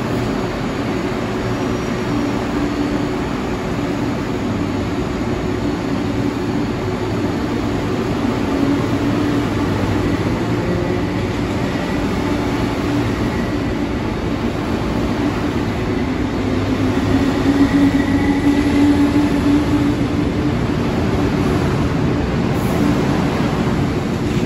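MTR East Rail Line electric multiple-unit train at the platform, giving a steady hum of its running equipment with a held low tone and a faint high whine. It grows a little louder around the middle and again past two-thirds of the way through.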